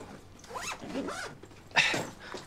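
Zipper on a travel bag being drawn in short strokes, with a louder, longer pull near the end.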